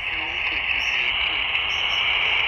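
Quansheng UV-K6 handheld, modified for HF and tuned to 14.215 MHz, playing received audio through its speaker: a steady hiss of band noise with a faint voice from another station coming and going in it.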